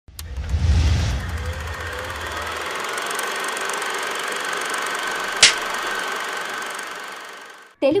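Intro sound effects under a title animation. A deep rumble swells in the first second and dies away, under a sustained hiss with a steady high tone. A single sharp click comes about five and a half seconds in, then the sound fades out.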